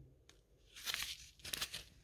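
A small fertilizer sachet crinkling in the hand as it is turned over, in two short rustles, the first a little under a second in and the second about half a second later.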